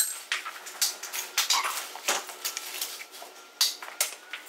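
A quick, irregular run of sharp knocks and clicks, several a second, with a faint steady high tone underneath.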